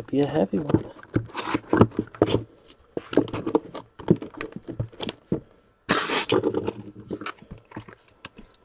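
Cardboard boxes and a shipping case being handled: repeated knocks, scrapes and slides of cardboard as boxes are lifted out and a case is set down. An indistinct voice sounds around the start and again about six seconds in.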